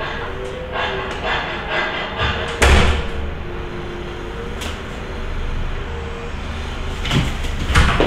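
A single loud thump about three seconds in, with a few quieter knocks and faint handling noise around it.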